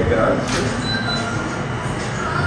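Steady rumbling background noise with faint voices in the room.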